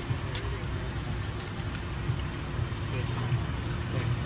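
Steady low rumble of an idling car engine, with a few light clicks over it.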